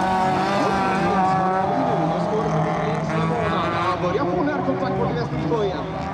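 Folkrace cars' engines running hard on the track: a steady, high-revving drone, with the pitch wavering slightly as they lift and accelerate.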